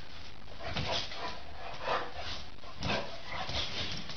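A pet animal giving a series of short cries over a noisy background, the strongest about one a second.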